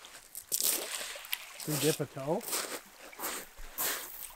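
Small lake waves lapping and sloshing at a pebbly shoreline in irregular splashes. A voice speaks briefly in the middle.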